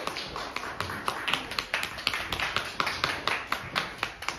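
Applause, individual hand claps standing out.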